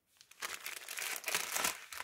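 Thin plastic packaging crinkling and rustling as bags of rhinestones are handled, starting about half a second in.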